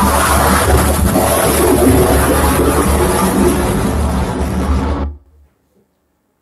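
Loud music with a heavy bass from the soundtrack of a missile-launch video played over the hall's speakers, cutting off suddenly about five seconds in.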